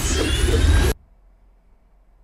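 A sci-fi whoosh sound effect: a dense rushing noise over a deep rumble, with a faint rising whine. It cuts off suddenly about a second in.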